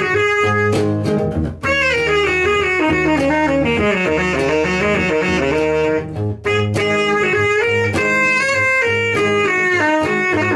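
Saxophone playing a melody over a bass guitar, with a run of quick, falling and wavering notes through the middle. The playing breaks off briefly about one and a half seconds in and again after about six seconds.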